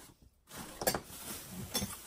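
Objects being moved about while someone rummages for the next item, with a light clink about a second in and another near the end.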